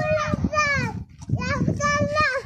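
Young children's high-pitched voices talking and calling out in short phrases, with a brief pause about a second in.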